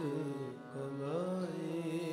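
Sikh kirtan: male voices singing a gliding melodic line over the held, reedy tones of harmoniums.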